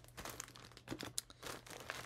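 Packaging crinkling and rustling in irregular little crackles as items are handled and taken out of a box.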